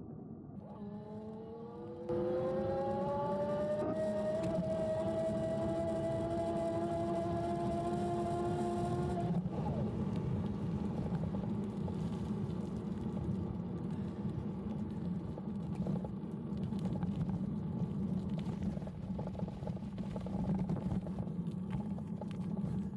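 CYC Photon mid-drive ebike motor whining, rising steadily in pitch as the bike picks up speed, then cutting off suddenly about nine seconds in. A steady rumble of wind and tyres on the path runs under it and on after it.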